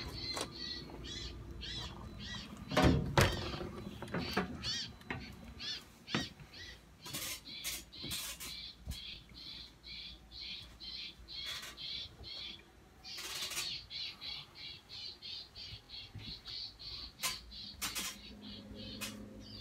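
A bird chirping over and over, short calls two or three a second. A few thumps and knocks from footsteps on the travel trailer's floor come through it, the loudest about three seconds in.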